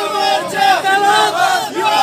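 A crowd of supporters shouting and chanting slogans, many voices overlapping in a continuous din.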